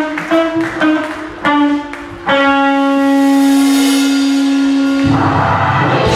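Live blues band: an electric guitar plays a run of short separate notes, then holds one long steady note, and about five seconds in the drums and full band crash back in.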